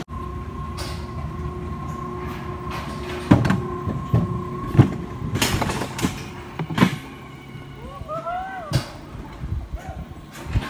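Rail bobsled running down its metal track: a steady whine from the running gear for the first six seconds or so, with a string of sharp knocks and rattles as the sled travels. A short vocal exclamation comes near the end.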